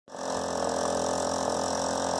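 An engine idling steadily, an even, unchanging hum.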